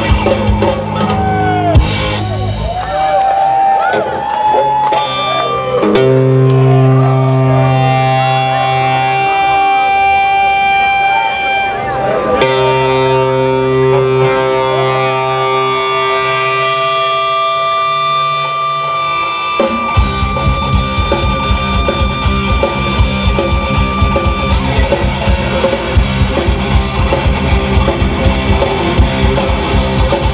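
Rock band playing live through a PA: long held electric guitar and bass notes with some sliding pitches, then about twenty seconds in the drums come in with a fast, driving beat and the full band plays.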